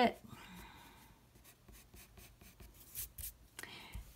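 Graphite pencil drawing on paper: a scratchy stroke lasting about a second, then fainter short strokes.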